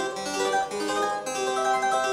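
Double-manual harpsichord playing a quick passage of plucked notes, the last of them left ringing. Its tone is twangier than it should be, which the player puts down to winter dryness.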